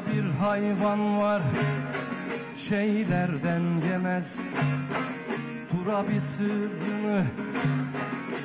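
Turkish folk music (türkü) played on plucked long-necked lutes of the bağlama (saz) kind: a sliding, ornamented melody over a sustained low drone, in an instrumental stretch of a song.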